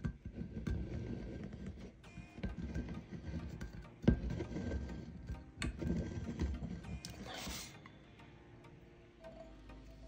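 Hands rubbing and pressing vinyl onto a tumbler, giving irregular handling noise with a few sharp knocks: one about four seconds in, then more near six and seven seconds. It quietens near the end.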